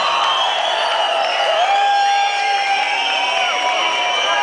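A concert crowd cheering and calling out after a song has just ended, many voices rising and falling in pitch, with no music playing.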